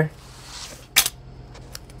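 A thin metal business card dropped onto a desk, landing with a single light click about a second in and barely any ring. It makes no real sound, too thin to sound like metal.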